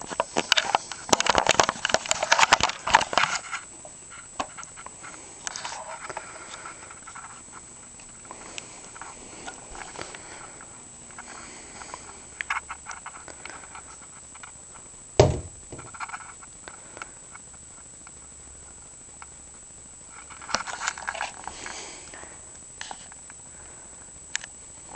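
Clear plastic hamster ball with a hamster running inside it, moving on carpet: scattered light clicks and rattles of the plastic, busier in the first few seconds, with one sharp knock about fifteen seconds in.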